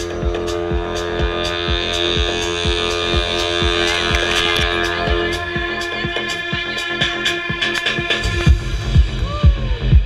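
Electronic dance music from a DJ set played loud over a club sound system: a steady kick drum at about two beats a second under held synth chords. The bass and kick drop back in the middle and return harder about eight and a half seconds in.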